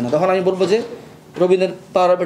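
Only speech: a man talking, in two phrases with a short pause between them.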